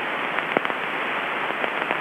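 Steady aircraft-radio hiss with a few faint crackles coming through the headset audio, in the pause of a recorded ATIS broadcast before it repeats.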